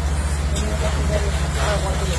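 Fire truck engine running steadily with a low, even hum, with people talking over it.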